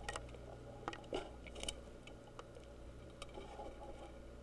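Faint scattered clicks and small taps from handling the specimen, over a low steady electrical hum.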